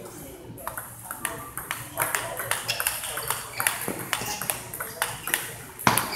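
Table tennis balls clicking off paddles and tables: irregular, sharp ticks from the surrounding tables, with the loudest hit near the end as play resumes on the near table.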